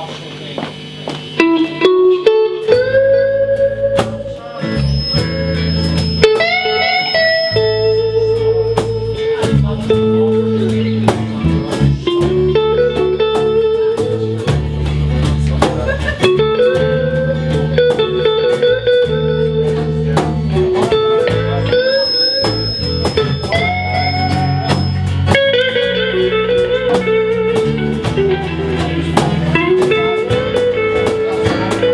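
Live band playing a blues instrumental opening: an electric lead guitar plays notes that bend upward over bass guitar and strummed acoustic guitar. The band comes in about two seconds in.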